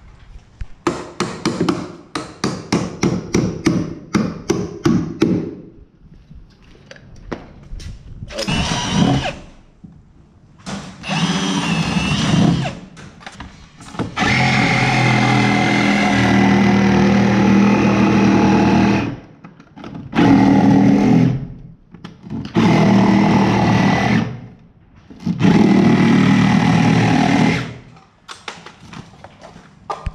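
Hammer blows on a wood stud, a quick run of strikes lasting about four seconds. Then a power drill runs in several bursts, the longest about five seconds near the middle.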